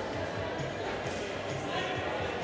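Sports-hall ambience: indistinct voices and background music echoing in a large hall, with dull low thumps coming every fraction of a second.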